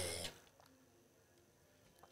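The tail of a man's spoken word fading out, then a pause of faint room tone.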